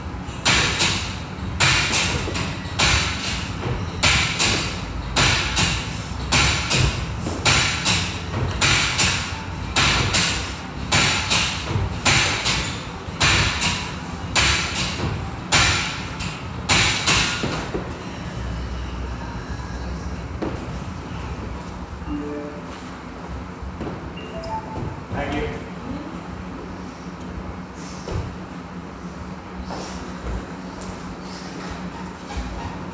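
Exercise on a gym floor: a regular run of short thumps, about three every two seconds, for roughly the first seventeen seconds, then they stop and only steady gym room noise is left.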